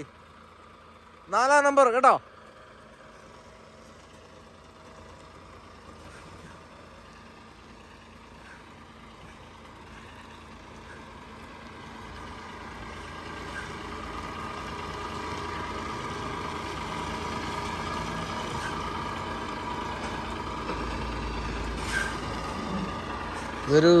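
Diesel engine of a Volvo FH 500 tractor-trailer running as the truck is manoeuvred on reversing practice, growing steadily louder through the second half. A brief sharp sound stands out near the end.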